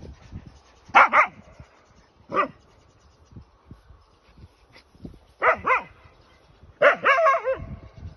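A dog barking in short bursts: a double bark about a second in, a single bark a little later, another double bark past the middle, and a longer run of barks near the end.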